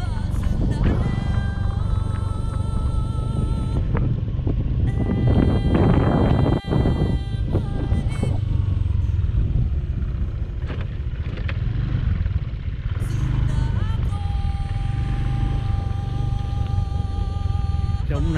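Motorcycle riding along a road: a steady low rumble of engine and wind. Music with long held notes plays over it.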